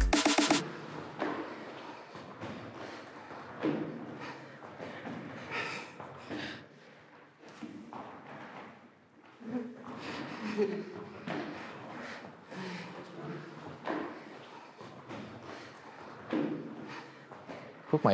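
Feet in fabric shoe covers sliding side to side on slide boards, with irregular thuds as they hit the end bumpers. Faint voices come and go.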